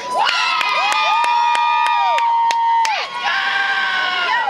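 A small crowd of spectators cheering for the swimmers, with several voices holding long, high-pitched "woo" yells that overlap and die away near the end, over scattered clapping.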